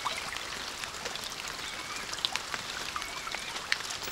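Steady rush of running water from a stream over rocks, with a few faint high chirps and small ticks on top.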